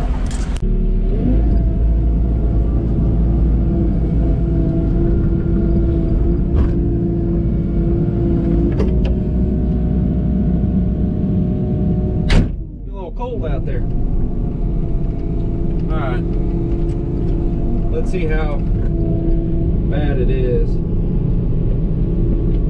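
Mini excavator's diesel engine running steadily, heard from inside the cab, with a few short clanks as the machine moves and works. A sharp knock comes a little past halfway, and the engine sound dips briefly after it.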